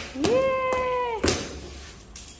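A cat meowing once, a drawn-out call of about a second that rises, holds and falls away. Sharp snaps come just before and just after it, from scissors cutting the plastic packing strap on the box.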